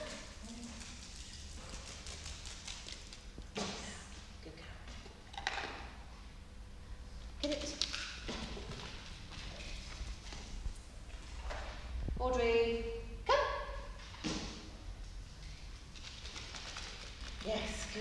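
A small dachshund's claws and paws tapping faintly on a bare wooden floor as it trots across a large hall. A woman's voice calls out briefly a few times, the longest call about two-thirds of the way through.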